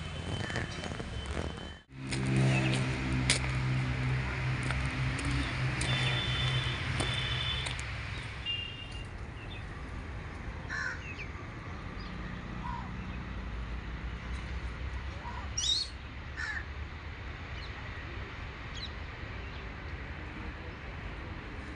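Outdoor ambience with scattered short bird calls. A low steady hum is loudest for several seconds after a sudden break about two seconds in.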